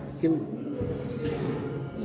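A man's voice speaking Yakut: a short word about a quarter second in, then hesitant, quieter talk and pauses.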